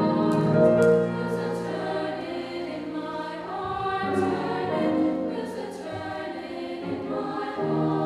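High school choir singing sustained chords with grand piano accompaniment; the singers' 's' consonants land together as short hisses a few times in the first two seconds.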